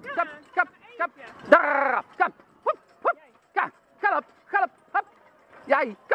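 A carriage driver's voice calling short, rhythmic encouragement cues to a driving pony, about two calls a second, with one longer call about a second and a half in.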